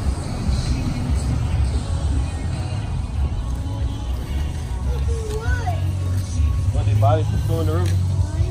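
Steady low rumble of road traffic on a bridge, with a pickup truck driving across. Voices come in over it in the second half.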